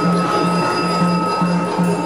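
Live traditional stage-theatre music of the Yakshagana kind: a steady high held drone note over a low drum beat repeating about three times a second.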